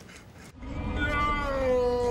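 A single long, drawn-out wailing note that begins about half a second in and slides slowly down in pitch, held without a break.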